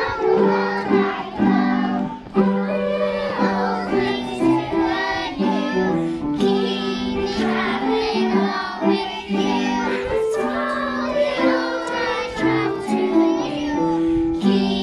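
Young children singing a song together over instrumental accompaniment, with held accompanying notes changing step by step under the voices.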